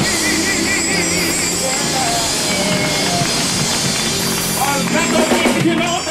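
Live gospel band playing: electronic keyboard holding sustained chords over a drum kit. A high, wavering held note sounds in the first second or so, and voices come in near the end.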